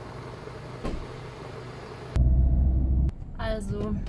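Steady noise for about two seconds, then an abrupt switch to a loud low rumble of a car for about a second. A brief voice sound follows near the end.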